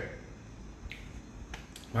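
A few faint, short clicks in a quiet pause: one a little before the middle, then a few close together near the end.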